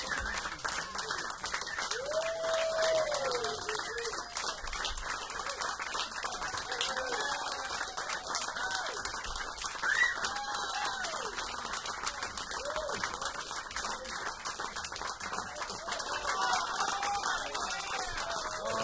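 A small audience applauding steadily, with scattered whoops and calls rising and falling over the clapping.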